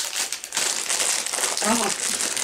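Snack wrapper crinkling as it is handled, a continuous run of small crackles.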